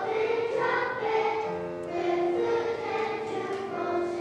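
Children's choir singing together, accompanied on piano, with sustained notes moving from pitch to pitch.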